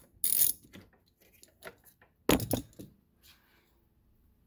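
Ratchet and deep socket working small metal nuts off a taillight's mounting studs: metal clinks and faint ticks, with a bright metallic jingle just after the start and a louder clatter a little past the middle.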